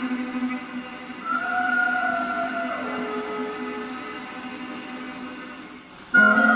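Film score music from a 16mm print's soundtrack, played through the projector: a low note held throughout under a soft melody that slides downward a little before halfway, the whole slowly fading.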